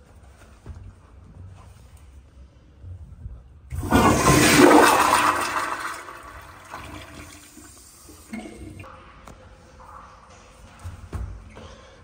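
TOTO commercial toilet with a flushometer valve flushing: a sudden loud rush of water about four seconds in that lasts about two seconds, then tapers into a quieter trickle as the bowl refills.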